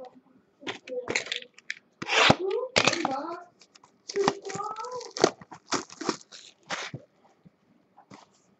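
Cardboard trading-card box being torn open by hand: a run of short, sharp ripping and crinkling sounds, with a few wavering squeal-like tones mixed in between about two and five seconds in.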